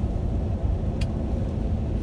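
Steady low road and engine rumble heard inside the cabin of a moving car, with a single short click about a second in.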